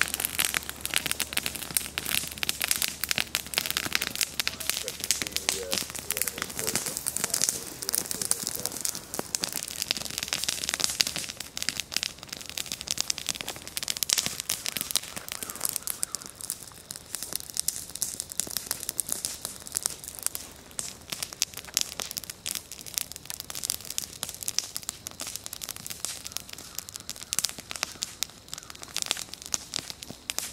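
Wood bonfire crackling, a dense, irregular run of sharp snaps and pops.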